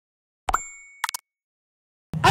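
Animated-logo sound effects: a pop with a short chiming ring about half a second in, then three quick short pops just after a second in.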